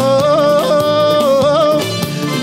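Church worship song with band accompaniment: a singer holds one long note with vibrato that bends up briefly near the middle.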